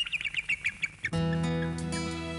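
A bald eagle's call: a quick run of about seven high chirping notes. About a second in, music starts with sustained chords.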